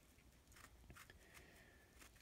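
Near silence, with a few faint clicks and soft scraping of a knife cutting the peel off an orange.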